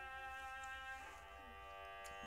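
Quiet background music of sustained, string-like chords, with a change of chord about a second in.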